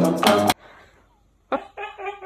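Music cuts off about half a second in. About a second and a half in, a Siberian husky starts a drawn-out vocal howl, its pitch wavering up and down.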